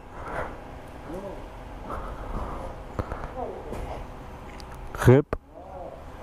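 Mostly voices: faint laughing and brief vocal sounds over a steady low background, then a single loud shout of "RIP!" near the end.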